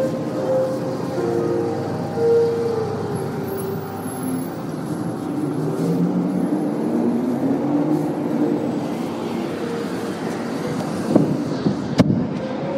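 Held musical tones that slowly shift in pitch, over a steady noise like street traffic, with a few short knocks near the end.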